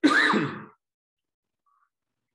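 A single short, loud wordless burst of a man's voice, under a second long, its pitch falling.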